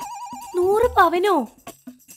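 A warbling electronic tone like a phone ringtone, trilling about fifteen times a second, cuts off about half a second in. A brief voice follows.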